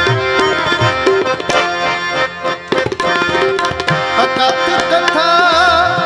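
Tabla and harmonium playing an instrumental kirtan passage: quick tabla strokes over deep bass-drum hits, under the harmonium's sustained reed chords. A singer's voice comes in near the end.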